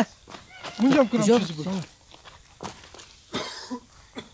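A voice talking for about a second, then scattered footsteps on a dry, stony trail and a short cough about three and a half seconds in.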